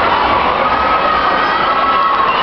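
Tournament spectators in a gym yelling and cheering on the grapplers, many voices at once and steady throughout, with one voice holding a long shout above the rest.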